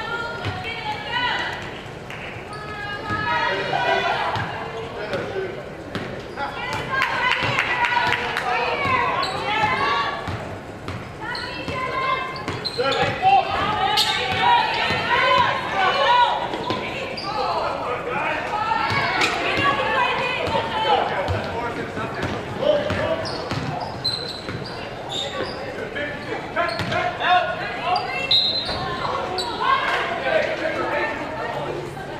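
A basketball bouncing on a hardwood gym floor during live play, with a few sharper knocks, against people's voices throughout. It sounds hall-like, as in a large gymnasium.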